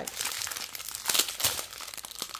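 Thin plastic strip bags of diamond-painting resin drills crinkling as they are handled and unfolded, with irregular crackles.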